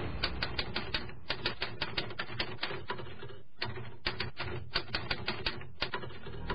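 Typewriter key-clicks as a sound effect for an on-screen caption being typed out, a quick run of sharp taps at about five or six a second with a short pause a little past the middle.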